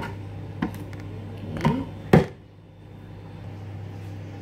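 Kitchen knife striking a plastic cutting board four times while cutting leafy greens, the last knock about two seconds in the loudest. A steady low hum runs underneath.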